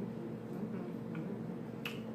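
Snow crab shell cracking as it is broken apart by hand: a few small cracks, then a sharper snap near the end, over a steady low hum.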